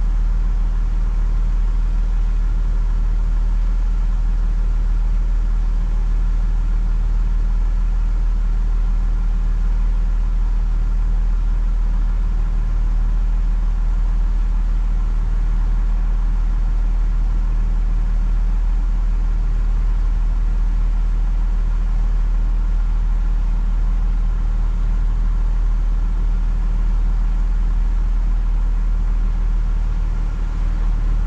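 Car engine idling with a steady, unchanging low hum while the car is stopped.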